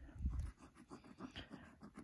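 A coin scraping the scratch-off coating from a paper lottery ticket: a faint run of quick, irregular rasping strokes.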